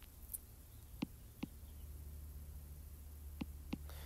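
Four faint, sharp clicks of a stylus tapping on a tablet screen while writing, in two pairs about two seconds apart, over a low steady hum.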